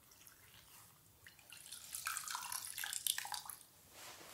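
Wet cosmetic sponges being squeezed out, with water dripping and crackling in a dense cluster of small splashes for about two seconds in the middle.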